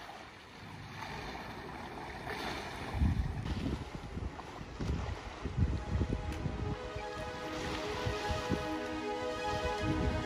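Wind buffeting the microphone in gusts, with small waves washing up a stone harbour slipway. Background music fades in over the last few seconds.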